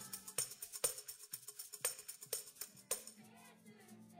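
Hand percussion (maraca and tambourine) shaken and struck in a steady beat, about two strokes a second, thinning out near the end, with faint low held notes underneath.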